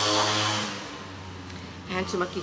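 A steady electrical hum, with a louder rushing, whirring noise for about the first half second that then fades away.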